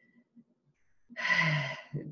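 A woman's audible breath, a breathy intake lasting just under a second, after about a second of near silence.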